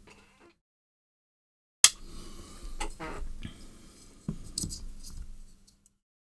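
Hands handling the opened plastic casing of a pair of hair straighteners, starting about two seconds in with a sharp click, then irregular small clicks, knocks and scraping as parts are moved and fitted together.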